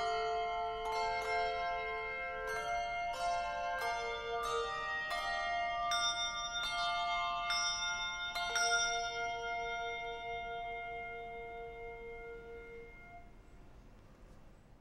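Handbell choir playing, many bells struck in quick succession and each note ringing on. The last chord, struck about eight and a half seconds in, rings out and slowly fades away.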